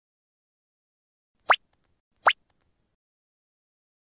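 Two short upward-sweeping pop sound effects, about three-quarters of a second apart, with silence around them.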